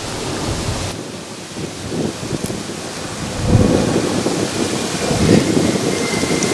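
Pear-tree leaves and branches rustling as they are pushed aside, with low rumbling buffets on the microphone that swell about two, three and a half and five seconds in.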